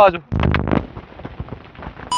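A quick cluster of dull knocks and thumps about half a second in, then a low, rough background noise.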